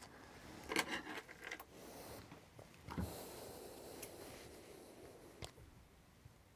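Faint handling noises of a table tennis racket and a pair of scissors being picked up and moved: scattered clicks and scraping, a soft knock about three seconds in, and a short click near the end.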